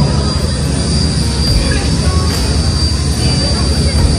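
Passenger ferry's engine running steadily under way: a deep continuous rumble with a thin steady high whine above it.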